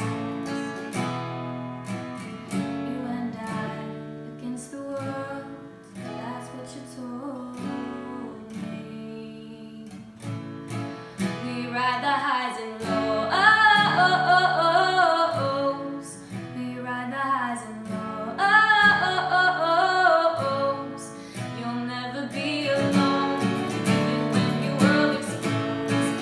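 A young woman singing solo with her own strummed steel-string acoustic guitar. The voice gets louder and climbs higher twice, about halfway through and again a few seconds later.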